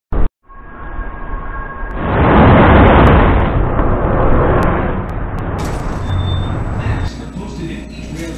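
City bus passing close by at street level: a rush of engine and road noise that swells about two seconds in and fades away, after a short loud burst at the very start.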